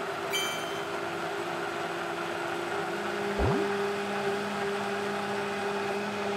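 High-powered countertop blender running steadily, blending leafy greens and liquid into a green health drink. A short rising tone cuts in about halfway through.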